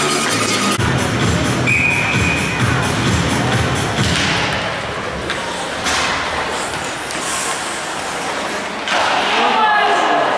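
Ice rink ambience during a youth hockey game: indistinct spectator voices and music in a large echoing hall, with a few sharp knocks of sticks and puck on the ice and boards.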